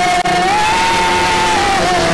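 A man singing one long held note of a worship song through a microphone and PA. The note steps up in pitch about half a second in and slides back down near the end, over lower sustained backing tones.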